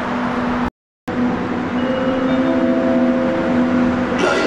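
Electric train running through the station: a steady loud rumble with a few steady humming tones that come in from about two seconds in. The sound cuts out completely for a moment just under a second in.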